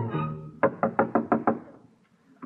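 A brass music bridge dies away, then six quick knocks on a door, a radio-drama sound effect.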